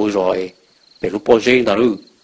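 A man narrating a story in Hmong, in two short phrases with a pause between, over a faint, steady, high chirping of crickets.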